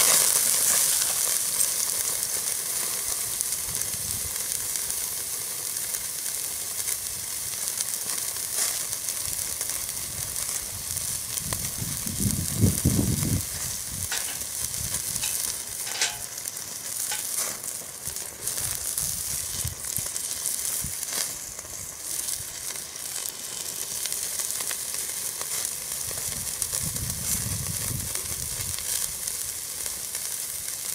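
Steak sizzling hard on a grill grate over a Weber chimney starter of hot lump charcoal, the freshly flipped side searing; the sizzle is loudest right after the flip and then settles to a steady hiss with scattered pops. A brief low rumble comes about twelve seconds in.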